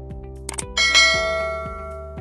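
Outro background music with a bright bell-like chime sound effect struck about three-quarters of a second in, ringing out and fading over the following second, just after a couple of short clicks.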